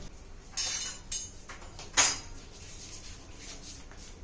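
A few light knocks and scrapes of a glass jar with a plastic lid being handled and set down, the sharpest one about two seconds in.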